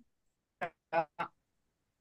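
Three brief, clipped blips of a man's voice with dead silence between them: his speech is chopped up as the video call's audio drops out, so the syllables come through garbled and quack-like.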